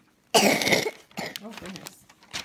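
One loud cough from a person close to the microphone, starting about a third of a second in and lasting about half a second.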